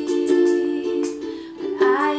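Ukulele strumming chords, with regular strums ringing through, and a woman's singing voice coming back in near the end.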